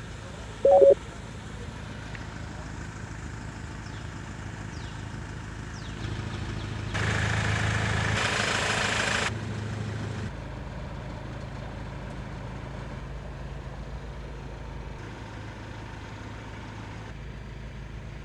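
Mahindra XUV500's 2.2-litre mHawk diesel engine idling steadily, with a brief loud tone about a second in and a louder, hissy stretch for about two seconds midway.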